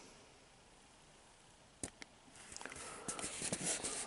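A Pringles can being turned in the hand close to the microphone. It is quiet at first, then two small clicks come about two seconds in, followed by a run of light scraping and rustling of fingers on the can.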